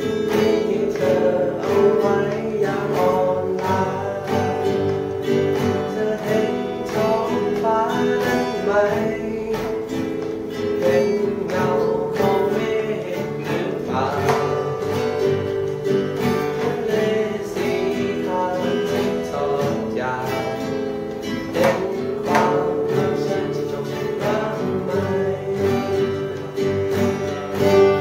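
Acoustic guitar played solo fingerstyle: a plucked melody of quick single notes over ringing bass and chord tones, continuous throughout.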